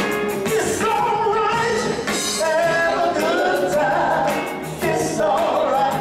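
Live beach music band performing with sung vocals over a steady drum beat.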